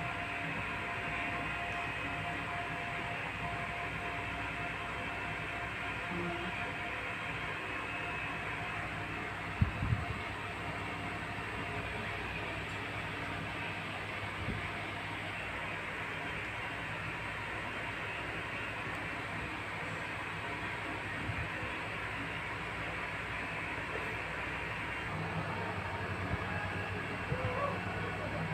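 Steady background rumble and hiss with no speech, broken by a pair of sharp knocks about ten seconds in and a little light clatter near the end.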